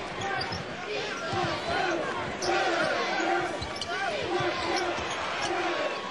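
A basketball dribbled on a hardwood court, bouncing repeatedly, with players' and crowd voices in the arena under it.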